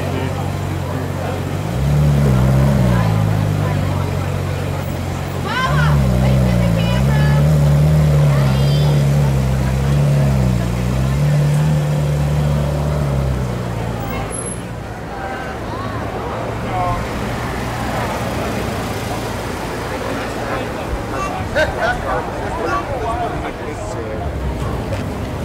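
Ferrari 458 Spider's V8 running at low revs as it moves off in traffic, its pitch rising and falling, for about twelve seconds before dying away into street noise.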